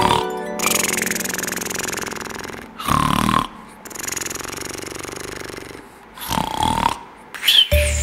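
Comic snoring: two loud rasping snores, about three and a half seconds apart, with breathy exhales between them, over background music.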